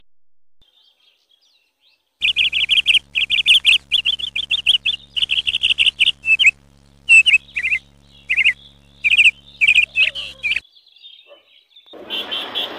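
Small birds chirping in quick, high runs of repeated notes, starting about two seconds in and stopping shortly before the end.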